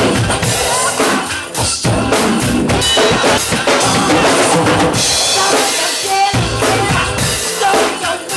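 Drum kit played in a steady groove, kick, snare and cymbals, over a recorded pop song, with the cymbals washing louder about five seconds in and again near the end.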